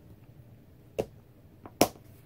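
Two sharp plastic clicks, about a second in and again near the end, the second the louder: the cap of a Stampin' Blends alcohol marker being pulled off or snapped back on.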